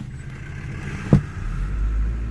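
Toyota 2C four-cylinder diesel engine running, heard from inside the car's cabin, with one sharp knock about a second in. The engine's low rumble swells in the last half second.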